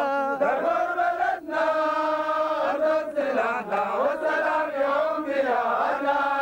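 A group of men's voices chanting together in long held notes. The phrases break off and shift in pitch every second or so, and a laugh comes a little over four seconds in.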